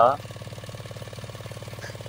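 Single-cylinder diesel engine of a KAMCO 170F walk-behind power reaper running steadily, with an even pulsing hum, while the machine cuts rice stalks.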